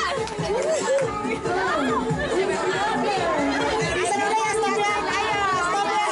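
Several women's voices chattering over one another as a group looks on at an arm-wrestling bout, with no single clear speaker.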